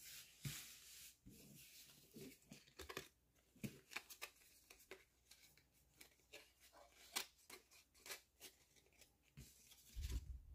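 Pokémon trading cards being handled: faint swishes of cards sliding off a stack and light clicks and taps as they are flicked and set down on a playmat, irregular throughout, with a sharper tap just before the end.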